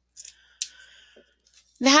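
A pen being handled on a desk: a soft scrape with one sharp click about half a second in.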